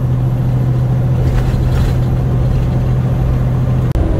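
Semi truck cab at highway speed: a steady low engine drone over road noise. The drone cuts off abruptly with a brief dropout just before the end.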